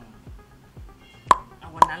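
Background music with a steady low beat under a TV news segment, with two sharp, very short pop sound effects added in editing, about a second and a second and a half in.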